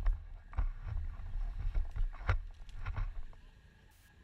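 Muddy stream water splashing and sloshing in several short bursts over a low rumble. The sound fades near the end.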